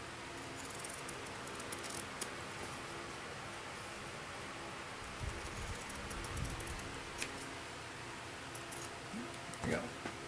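Scissors snipping through cross-stitch fabric in short, irregular cuts, with the cloth being handled between snips.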